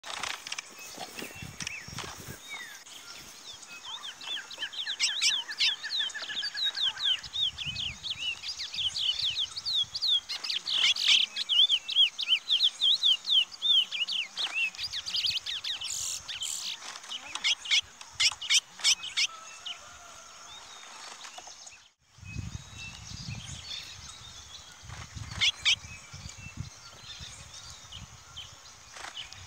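Chestnut-bellied seed finch (curió) singing: a long run of quick, rapidly repeated whistled notes lasting about fifteen seconds before breaking off. Later there is a sudden short gap, then low rumbling with a few scattered chirps.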